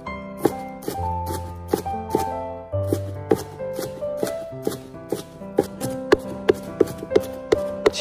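Chinese cleaver mincing scallion on a wooden cutting board: a run of sharp chops, a few a second, quickening to about four a second near the end, over background music.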